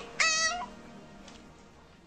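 A kitten meowing once, a short high cry about a quarter second in. It then fades out, and the sound cuts off at the very end.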